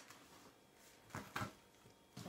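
Two brief rustling knocks a little over a second in, a quarter second apart, from gloved hands handling a clear plastic orchid pot and loose potting mix; otherwise faint room tone.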